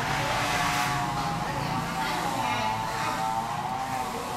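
A motor engine running steadily, its pitch drifting slightly up and down.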